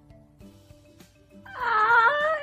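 Quiet music with steady held notes, then near the end a woman's loud, high-pitched squealing laugh that wavers in pitch.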